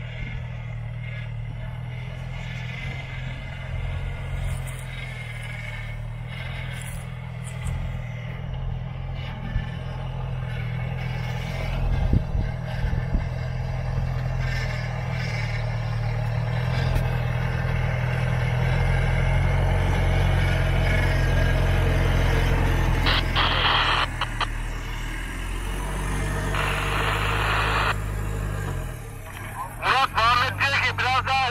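Engine of a lifted Toyota Hilux pickup running at low revs as it crawls down a steep dirt slope toward the microphone, growing louder as it nears; the engine note drops just before it passes.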